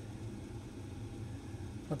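Steady low background hum of room noise with no distinct handling clicks; a man's voice starts right at the end.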